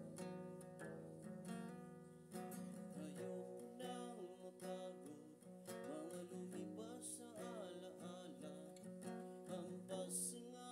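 Acoustic guitar music strumming chords, with a man singing along in wavering held notes from about three seconds in.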